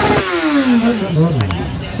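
Motorcycle engine revving as the bike rides close past, its pitch falling steadily over about a second and a half.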